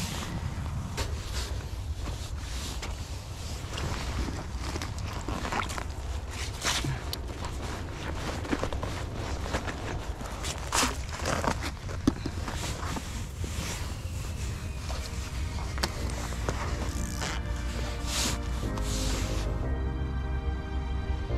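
Wind rumbling on the microphone, with scattered knocks and crunches of movement and handling on snow and ice. Background music comes in about four seconds before the end.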